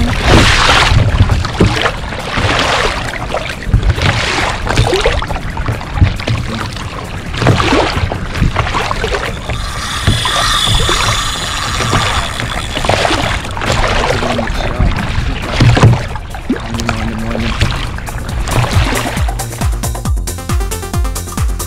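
Electronic background music with a steady beat, over water rushing and splashing along a plastic kayak's hull.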